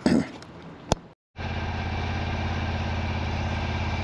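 A 32-inch walk-behind lawn mower's engine running steadily, starting abruptly about a second in. Before it, a brief burst of noise and a sharp click.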